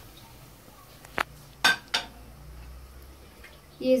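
A spoon knocking against a cooking pot three times in quick succession, about a second in, over a faint background.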